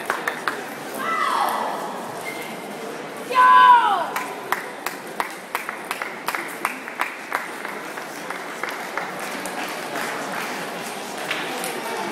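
Table tennis balls clicking off bats and tables in rallies, a steady patter of sharp ticks from the nearby table and others around the hall. Twice a falling tone sweeps down in pitch, about a second in and again past three seconds, the second louder than anything else.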